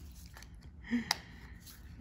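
Quiet room tone in a pause between speech, with a brief low voice sound just before one second in and a single sharp click just after it.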